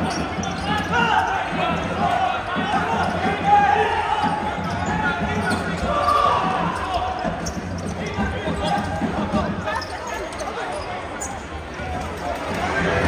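A futsal ball being kicked and touched on a hard indoor court, with scattered sharp knocks as it is passed and dribbled. Players' and spectators' voices call out throughout, ringing in a large sports hall.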